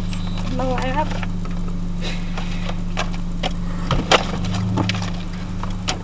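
A car idling, heard from inside the cabin as a steady low hum. A short wavering voice comes about half a second in, with scattered clicks and one sharp click about four seconds in.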